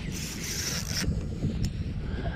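Shimano Vanford spinning reel's drag slipping as a hooked redfish pulls line, a high buzz for about the first second, with a low rumble underneath. The drag is set light so the fish cannot straighten a light-wire one-tenth-ounce jig hook.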